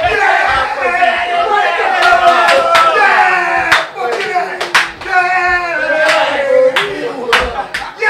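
A small group of men cheering and chanting together over one another in celebration of a goal, with sharp hand claps scattered through.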